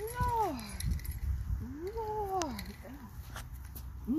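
A young woman's wordless voice: two drawn-out sing-song calls, each rising and then falling in pitch, about two seconds apart, over a low rumble.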